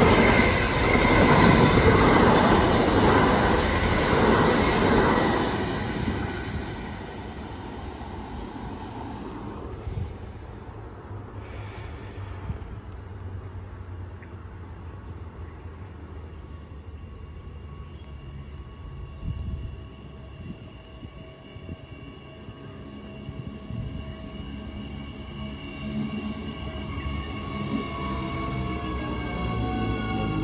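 Electric multiple-unit suburban train running past close along the platform, its wheels and carriages clattering loudly and fading away over the first six seconds. Later a second electric train approaches and pulls in, with thin whining tones that grow and shift in pitch near the end as it slows.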